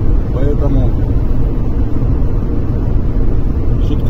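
Steady low rumble of tyre and engine noise inside a car cruising at highway speed, with a few spoken words in the first second.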